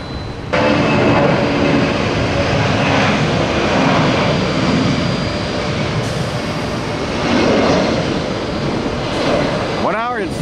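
Jet airliner engines at takeoff power during the takeoff roll: a loud, steady noise with engine tones that starts abruptly about half a second in.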